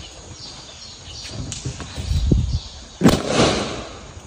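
An elephant blowing a balloon up through its trunk, with low puffs of air, until the balloon bursts with a sudden sharp bang about three seconds in, followed by a brief rush of noise.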